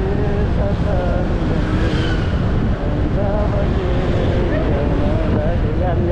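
Steady wind rush and road noise on the microphone of a moving motorcycle, with a voice singing held, wavering notes over it.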